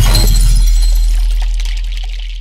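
The tail of an editing transition sound effect for a title card: a deep boom under a bright, glassy shimmer, both fading slowly after a sudden hit.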